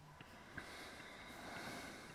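A faint breath through the nose, swelling and fading over about a second and a half, with a light click near the start.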